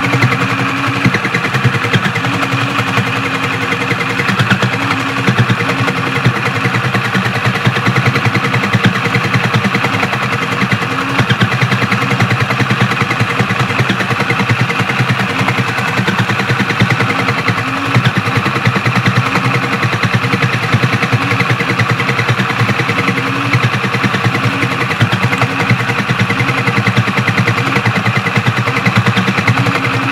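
Battery-powered Sew Cool toy sewing machine running continuously, its needle mechanism making a rapid, even clatter over a steady motor hum as fabric is fed through.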